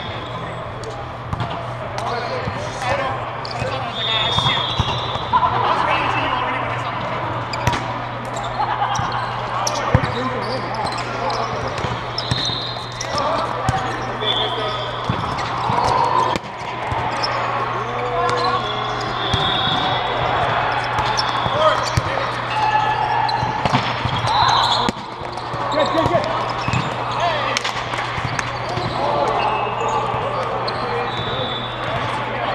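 Indoor volleyball hall ambience: irregular thuds of balls being struck and hitting the floor, short sneaker squeaks on the court and indistinct players' voices, over a steady low hum.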